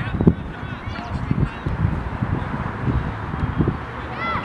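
Sideline sound of a youth soccer match in play: faint shouts from players and spectators over a busy outdoor background, with irregular low thumps.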